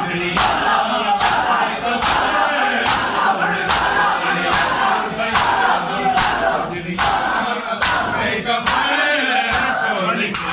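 A crowd of bare-chested mourners doing matam, striking their chests with open palms in unison in a steady beat of about five slaps every four seconds, with a crowd of men's voices chanting over it.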